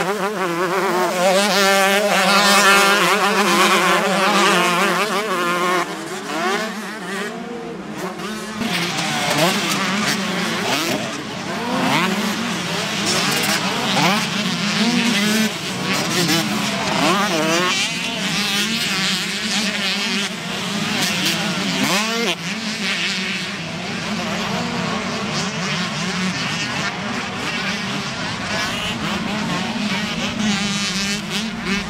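Several 125 cc two-stroke motocross bikes racing, their engines revving hard and dropping back through the gears, with many engine pitches rising and falling over one another.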